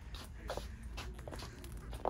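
Faint footsteps and scuffs on a hard shop floor as two people walk, over a low steady background hum.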